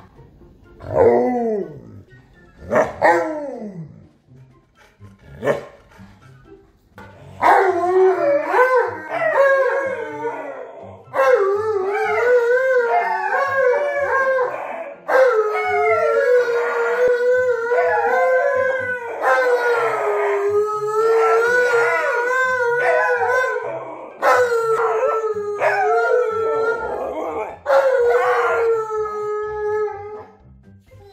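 An Alaskan malamute and a husky howling together. A few short yowls that drop in pitch come first, then from about seven seconds in long, wavering howls in two overlapping voices that carry on almost to the end.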